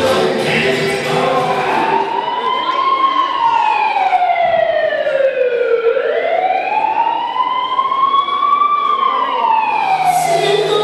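Wailing siren sound effect in the dance music playing over the hall's sound system: after a second or two of music, two slow rise-and-fall sweeps.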